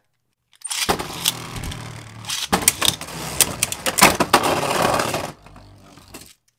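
Beyblade Burst tops spinning in a plastic stadium. About a second in they are launched, and a loud grinding whir follows, with repeated sharp clacks as the tops collide. The noise dies away suddenly about five seconds in, as the battle ends.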